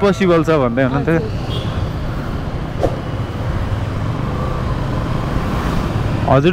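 Motorcycle engine running steadily at low city speed, heard from the rider's seat with wind and road noise, after a voice in the first second. A brief click about three seconds in.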